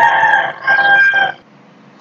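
Rooster crowing once: a drawn-out call of a few held notes that ends about a second and a half in.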